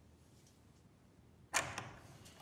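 A single sudden hit about one and a half seconds in, loud and dying away within a fraction of a second, with a couple of fainter clicks after it: a dramatic sound-effect hit on the drama's soundtrack.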